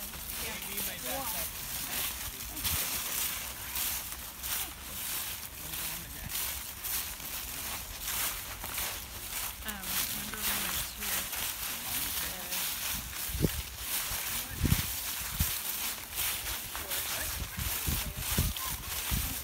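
Footsteps of several people walking through dry fallen leaves, a continuous run of short, crisp rustles. There are faint voices and a few low thumps about thirteen to fifteen seconds in.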